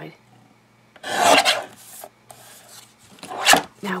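Fiskars paper trimmer cutting card: a rasping scrape of the blade through the paper about a second in, lasting about half a second. A softer rustle follows, then a sharp knock near the end.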